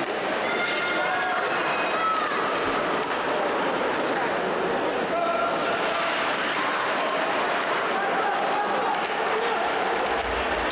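Ice hockey rink sound during play: a steady hiss of skates on the ice with a few faint voices calling out.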